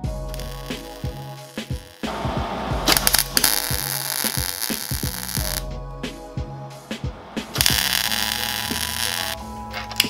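Wire-feed welder laying tack welds on a steel bracket: two bursts of arc noise, the first about two and a half seconds long, the second about two seconds, over background music.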